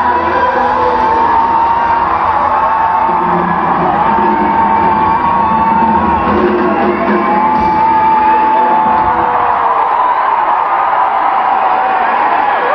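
Live rock band playing the closing bars of a song in a large hall, with long held, wavering notes and shouts and whoops over it; the bass and drums thin out near the end.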